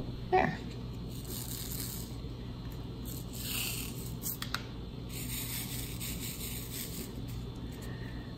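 Faint rattles, light clicks and scrapes of diamond-painting work, drills shifting in a tray and being tapped onto the canvas, over a steady low hum, with a brief louder sound about a third of a second in.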